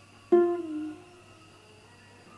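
Ukulele played once, a single strum about a third of a second in that rings and fades within about half a second.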